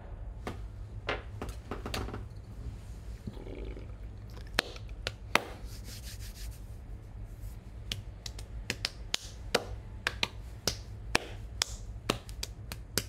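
Scattered sharp clicks and taps, coming more often near the end, over a steady low hum.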